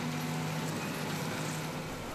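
Krone BiG Pack HDP II large square baler working in straw, its pickup gathering the swath: a steady low machine hum with an even hiss over it.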